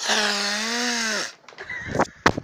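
A person's single long, drawn-out vocal cry held at a near-steady pitch for just over a second, followed by a few faint clicks near the end.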